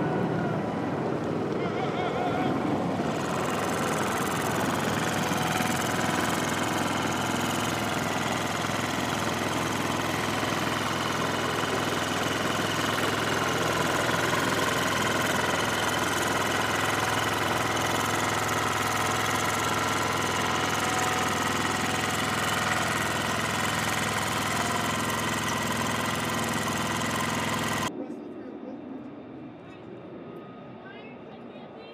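Steady engine and machinery noise of flight-line equipment with a whine of several steady tones, voices mixed in. It drops off suddenly near the end to a quieter background.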